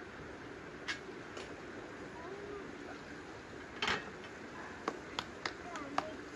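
A single louder knock about four seconds in as the round metal lid is set on the charcoal brazier. Then several quick sharp claps as hands are clapped together to dust them off. A steady outdoor hiss runs underneath.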